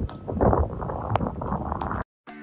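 Wind buffeting the microphone, with rustling and one sharp click a little past a second in as a vinyl inflatable donut float is handled.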